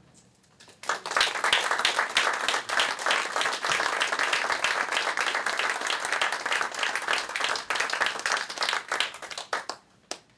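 Audience applauding: the clapping starts about a second in, holds steady, and dies away just before the end.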